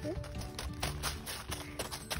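Background music under irregular crunching steps in thin snow.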